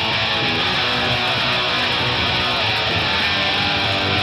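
Rock band playing an instrumental passage: electric guitars strumming chords at a steady, even level.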